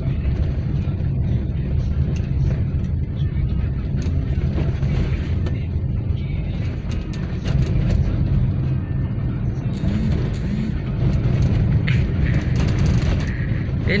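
A car's engine and tyre noise heard from inside the cabin while driving, a steady low rumble.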